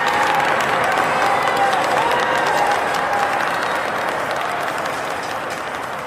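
An audience applauding, with a few drawn-out cheers over it in the first three seconds, slowly fading away.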